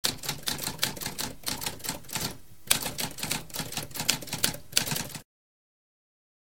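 Typewriter keys being struck in quick succession, several keystrokes a second, with a brief pause about halfway. The typing stops a little after five seconds.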